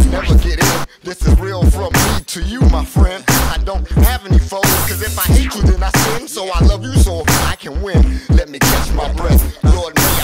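Hip hop track: rapped vocals over a drum beat with heavy bass.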